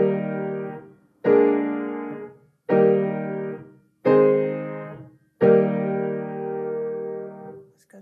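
Piano playing a I–V7–I–IV–I block-chord cadence in E-flat major with both hands. Five chords are struck about one and a half seconds apart, each ringing and fading, and the last is held longest.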